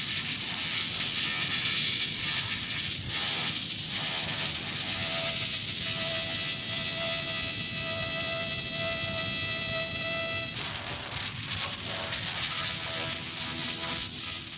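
The tail end of a lo-fi live punk bootleg tape recording: a steady noisy wash of band and room sound. A single held tone rises out of it about four seconds in and cuts off abruptly about ten seconds in.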